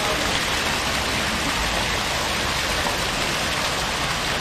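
Fountain water jets splashing steadily into the basin, an even rushing hiss with no let-up.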